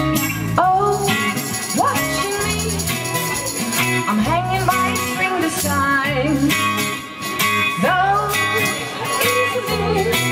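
Live band playing an instrumental passage: electric bass, electric guitar and drums, with a lead line whose notes slide up in pitch every second or two.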